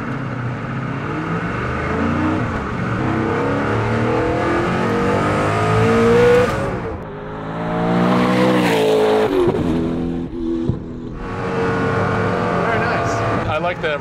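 Hennessey Venom F5's twin-turbo V8 under hard acceleration, the revs climbing steadily for several seconds and then dropping sharply at a shift. It revs up again and falls away quickly in rapid downshifts through the single-clutch gearbox, then settles.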